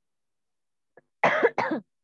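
A person coughing twice in quick succession, two short harsh coughs a little after a second in.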